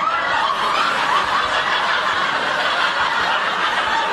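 Sitcom studio audience laughing, a loud sustained wave of many people's laughter that follows a punchline.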